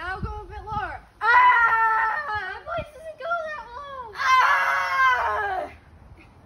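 A woman's voice wailing theatrically and high-pitched: a few short cries, then two long, loud wails, the first about a second in and the second near the end, each sliding down in pitch as it dies away.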